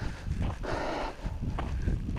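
A dog vocalizes once, for about half a second near the middle, over footsteps crunching on a gravel dirt road.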